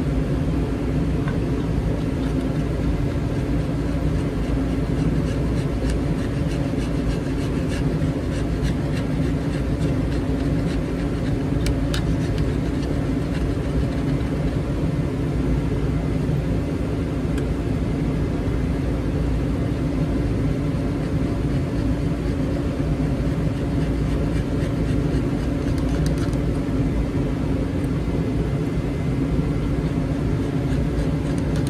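A steady mechanical hum and whir, like a motor running without change, with a few faint ticks and scratches around the middle.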